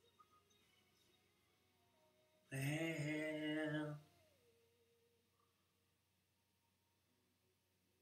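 A man's voice holds one sung note for about a second and a half, a couple of seconds in. Around it, music plays faintly in the background.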